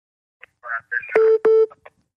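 Two short electronic telephone beeps, one right after the other, on a call-in phone line, after some faint garbled sound from the line.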